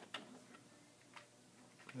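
Faint computer keyboard keystrokes: a few separate clicks as a number is typed into a spreadsheet cell and entered.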